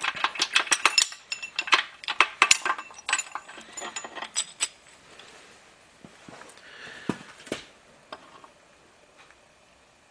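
Cast-iron main bearing cap of a Willys L134 engine being worked loose and lifted off the block: quick runs of sharp metal clinks and taps for the first few seconds, a few scattered taps around seven seconds, then it dies away.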